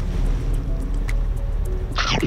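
A car engine idling with a steady low rumble, heard from inside the cabin, under light background music with a soft ticking beat.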